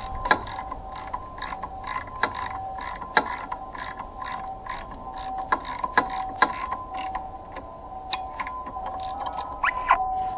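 Ratchet wrench clicking in short uneven strokes, a few clicks a second, as it turns the forcing screw of a bolt-on puller to draw the crankshaft pulley off a Mini Cooper S R53 engine.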